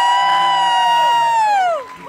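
Concert crowd screaming and cheering, with several high voices holding long screams together that slide down and fade out near the end.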